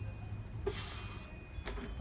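Faint, lingering ringing tones of a hanging metal wind chime over a low steady rumble. A short breathy hiss of exertion comes a little under a second in as a man strains through a pull-up, and a sharp click follows near the end.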